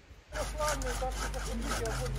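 Wood being sawn by hand in quick repeated rasping strokes, starting about a third of a second in, over the chatter of people and a low steady hum.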